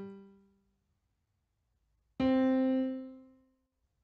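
FL Keys electric-piano plugin in FL Studio playing single auditioned notes. A lower note's tail fades out at the start, and about two seconds in one higher note sounds and rings out, fading over about a second and a half.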